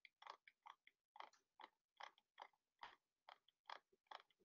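Near silence, with faint soft clicks at irregular intervals, about two a second.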